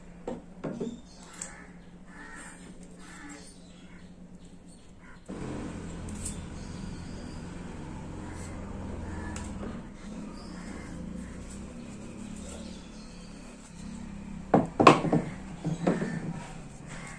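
Metal wall-fan motor parts handled on a wooden table: light clicks of small washers and the rotor shaft, with a few louder knocks near the end. A steady low hum comes in suddenly about five seconds in.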